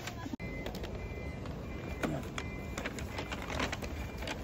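Steady low rumble of vehicle traffic, with scattered light clicks and a few short high beeps.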